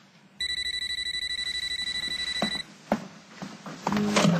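Mobile phone ringing: a high electronic trill that starts just under half a second in and stops after about two seconds, followed by a few faint knocks.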